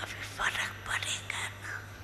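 A woman speaking in a hushed, breathy voice into a handheld microphone, in short broken phrases, over a steady low hum.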